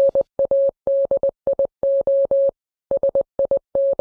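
Morse code beeps: a single steady mid-pitched tone keyed on and off in a quick run of short and long pulses, with a brief pause about two and a half seconds in.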